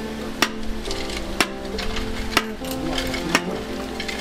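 A hammer driving a wooden stake for foundation concrete formwork: four sharp blows about a second apart, over background music.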